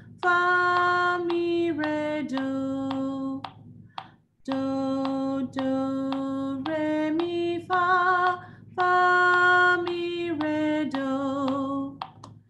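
A woman singing a simple stepwise practice melody in solfège without accompaniment: the end of one pass stepping down to do, a short rest, then the repeat rising do–re–mi–fa and falling back fa–mi–re–do.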